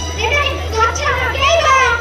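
High-pitched voices talking and calling out over a steady low hum.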